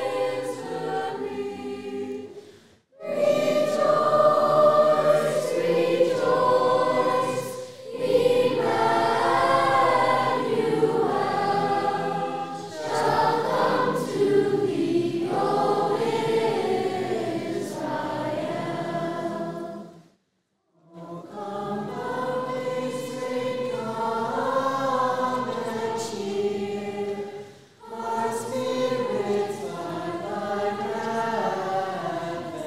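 School choir singing in sustained phrases, breaking off briefly about three seconds in and again about twenty seconds in.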